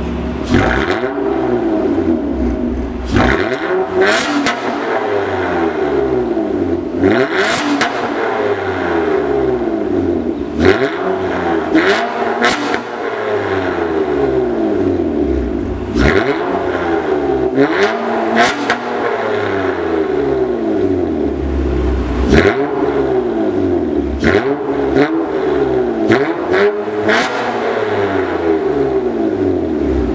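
2015 Honda Accord V6 (3.5-litre) through a Borla exhaust with the resonator deleted, free-revved at a standstill in more than a dozen quick throttle blips. Each blip's pitch shoots up and then falls back toward idle.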